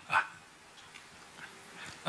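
A pause in speech at a table microphone: one brief vocal sound just after the start, then quiet room tone.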